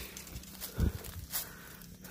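Footsteps of a person walking through dry brush and grass, with two heavier steps near the middle.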